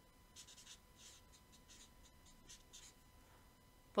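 Felt-tip highlighter writing on a paper notepad: a series of faint, short scratchy strokes as letters are drawn.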